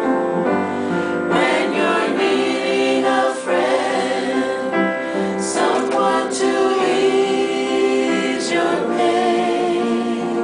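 A woman singing a slow, gospel-style song to piano accompaniment, holding long notes.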